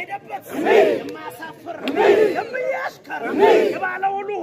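A group of men chanting in unison, a loud call that rises and falls in pitch, repeated three times at a steady rhythm about every second and a half. It is a traditional war chant sung in procession.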